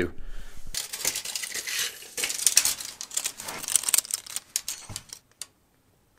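Steel tape measure being pulled out and handled against metal parts: a dense run of small clicks and rattles, starting just under a second in and lasting about four seconds.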